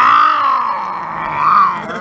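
A person's long, drawn-out yell, loud, with a wavering pitch that sags in the middle and swells again about one and a half seconds in.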